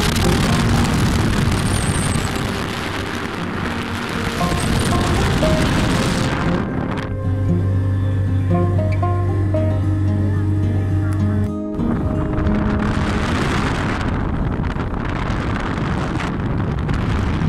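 Background music under a loud rush of wind on the microphone of a moving vehicle's camera. For about five seconds in the middle the wind rush drops away, leaving the music and a steady low hum, then the rush returns.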